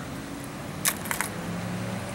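A few quick clicks of a hard lure and its metal hooks being set down into a clear plastic tackle box tray, about a second in, over a low steady hum.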